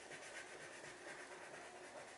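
Faint scratchy rubbing of a blue crayon scribbled back and forth on paper as a drawing is coloured in.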